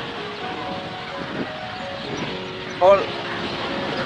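Faint music, a simple tune of held notes, over steady outdoor background noise, with one short spoken word near the end.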